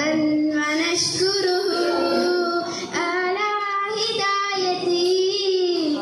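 A girl singing solo into a microphone, holding long notes that glide up and down between pitches.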